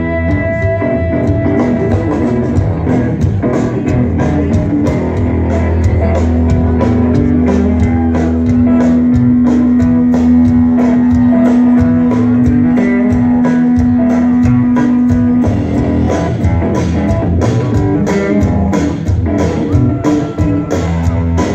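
Live rock band playing: electric guitars over a steady drum-kit beat. One note is held from about six seconds in to about fifteen.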